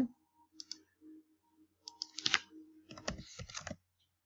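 Scattered clicks and keystrokes from a computer mouse and keyboard, coming in small clusters, over a faint steady hum.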